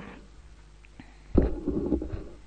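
Low rumbling handling noise from a gooseneck microphone being gripped and moved by hand, starting suddenly about a second and a half in. Before it there is only faint room tone with a small click.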